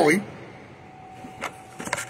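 A man's voice breaks off at the start, then quiet room tone broken by a sharp click about halfway through and a short cluster of clicks and knocks near the end, from a smartphone being picked up and handled.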